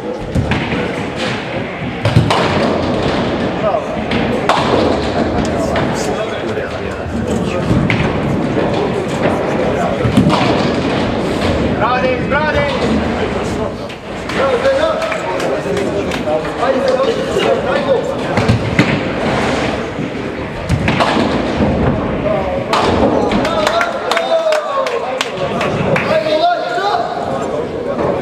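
Ninepin bowling balls knocking on the lanes and into the pins, with the sharpest knock about two seconds in and another near ten seconds, over continuous talk.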